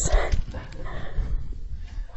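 A woman's short, breathy laugh, over a low rumble.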